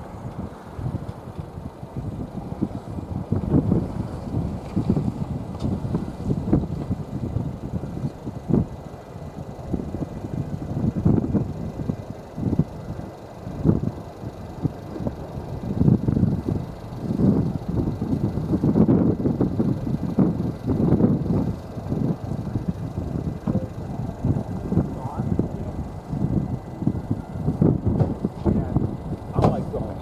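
Wind buffeting the microphone in gusts, a low rumble that swells and falls unevenly.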